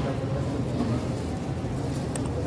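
Supermarket ambience: a steady low hum with faint voices in the background.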